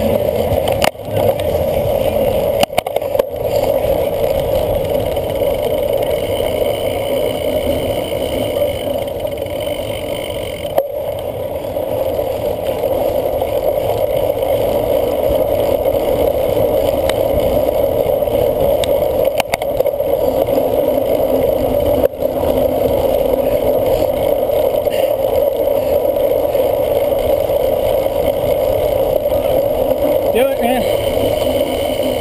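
Steady wind and riding noise picked up by a handlebar-mounted camera on a cyclocross bike moving over grass and dirt: the rush of air with tyre rumble and bike rattle beneath it, broken by a few brief dropouts.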